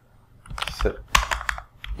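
Computer keyboard keys being typed: a short run of sharp keystrokes starting about half a second in and tapering off near the end.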